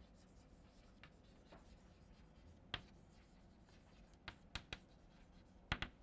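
Chalk writing on a blackboard: faint scratching of chalk strokes broken by short, sharp taps of the chalk on the board. The clearest tap comes a little under three seconds in, and a few more come in the last two seconds.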